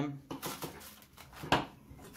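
Plastic cling film crinkling as it is stretched and pressed around the rim of a glass bowl, with one sharper crackle or tap about one and a half seconds in.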